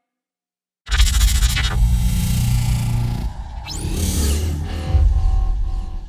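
Channel logo sting. Silence for almost a second, then a loud electronic music hit with deep bass and whooshing sweeps, one sharp rising sweep about midway, carrying on under the logo reveal.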